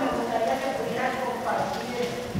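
A person's voice, with pauses every half second or so.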